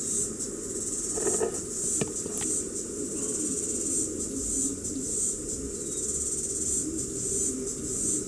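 Insects chirring steadily in the background, a continuous high-pitched pulsing trill, with a low background rumble and a few faint clicks.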